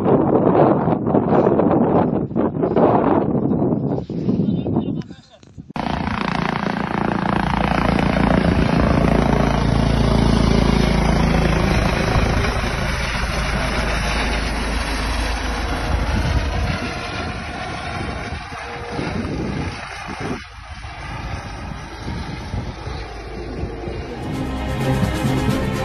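Air ambulance helicopter's rotor and engine running with a steady low rumble, loudest a few seconds after a cut early on and slowly getting quieter towards the end. Before the cut, wind buffets the microphone among a crowd of voices.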